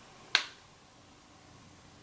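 A single sharp click about a third of a second in, then quiet room tone.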